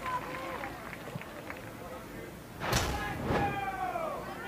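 Outdoor soccer field sound with faint players' voices calling. About three seconds in comes a sudden loud burst of noise, followed by a voice-like tone sliding down in pitch.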